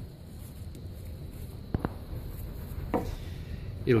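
Two brief handling clicks, a sharp one a little under two seconds in and a softer one near the end, as the plastic baffle is fitted onto a capsule polisher's brush, over a low steady background hum.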